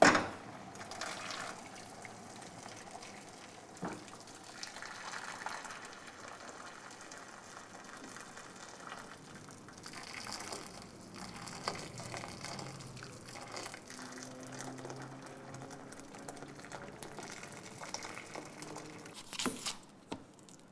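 Water running into a container, steady for the whole stretch, with a sharp knock right at the start and a lighter knock about four seconds in.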